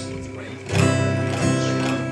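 An acoustic guitar chord strummed about three-quarters of a second in and left ringing.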